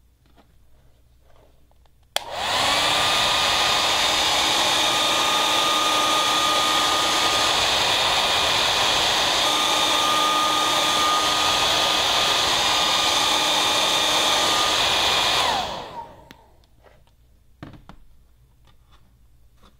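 Handheld hair dryer switched on with a click about two seconds in, running steadily for about thirteen seconds with a motor whine over the rush of air, then switched off and winding down. It is blowing warm air onto a plastic bucket wall to heat it before bonding a patch.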